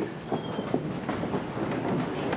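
A congregation sitting down: a steady jumble of rustling and shuffling, dotted with many small knocks and creaks.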